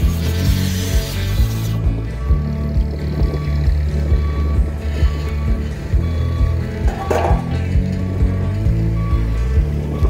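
Background music with a steady bass beat, with a brief scrape or clank about seven seconds in.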